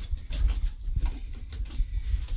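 Irregular knocks, clicks and scraping as old carpet is pulled by hand off a wooden bed frame, over a low rumble.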